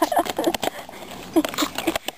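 A person laughing in short repeated bursts, over light knocks and clatters from a plastic bucket that a dog is carrying with its head inside it.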